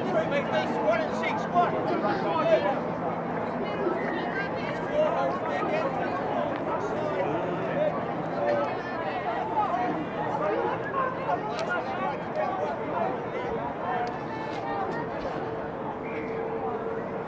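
Many voices at once, players and sideline spectators chatting and calling out, with no clear words.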